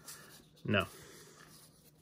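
Cardboard baseball cards sliding and rubbing against one another as a hand-held stack is shuffled through, a faint dry rustle.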